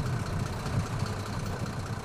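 Engine of a small water tanker truck running steadily as it drives along a street: a low, even hum with road noise.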